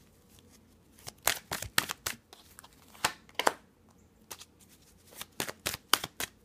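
A deck of tarot cards being shuffled by hand: quiet for about the first second, then irregular clusters of short, sharp card snaps and slaps.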